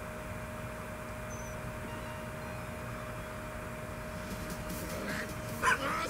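A low, steady hum over faint background noise. A man begins to laugh near the end.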